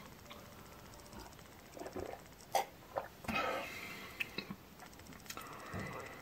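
Quiet sips and swallows of a thick strawberry-banana shake drunk from a glass, among a few small clicks and soft handling noises.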